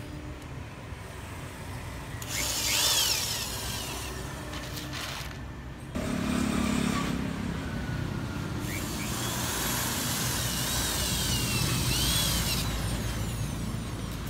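Cordless drill driving screws to fix a banner to its steel frame: a short run a couple of seconds in, then a longer run of about four seconds later, its motor whine rising and falling with the trigger.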